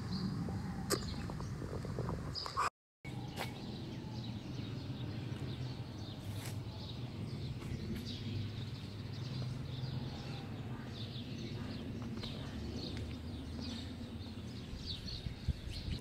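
Outdoor ambience recorded by a smartphone's microphone while walking: steady low background noise with faint, scattered bird chirps and a few light handling clicks. The sound cuts out completely for a moment about three seconds in.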